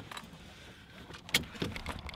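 Quiet inside a parked car's cabin, with one sharp click about a second and a third in and a few faint ticks near the end.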